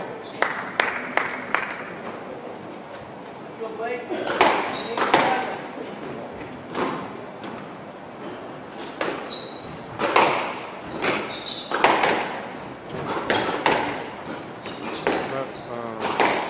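Squash rally: a few quick ball bounces before the serve, then sharp hits of the ball off rackets and court walls, each echoing in the hall, with short high squeaks of shoes on the wooden floor between them.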